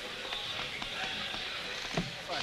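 Footsteps on a hard tiled floor, about two a second, over a steady hiss, with faint voices in the background.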